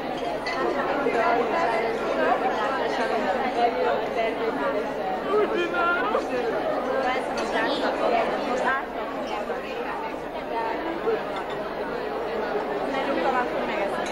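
Many people talking at once around a dinner table: a steady hubbub of overlapping voices, with a few light clinks of cutlery on plates.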